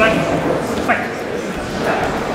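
Three short, high shouts from people around the cage, about a second apart, over the steady murmur of a crowd in a large hall.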